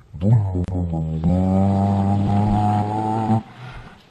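A low, buzzy droning hum lasting about three seconds. Its pitch drops at the start and then holds steady, with a brief break about a second in, before it cuts off.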